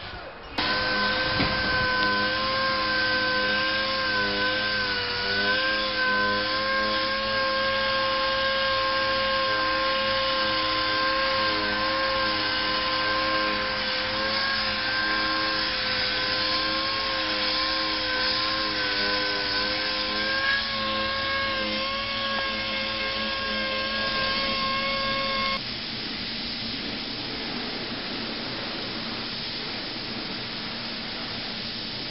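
A motor-driven tool whining at a steady, slightly wavering pitch, then cutting off about 25 seconds in, leaving a quieter steady hiss of air.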